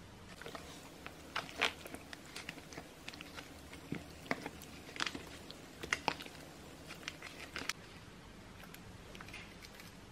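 Hands rubbing raw chicken pieces in soy-sauce marinade in a thin plastic tray: irregular wet squelches and clicks and crackles of the plastic. They are thickest from about half a second to eight seconds in and thin out near the end.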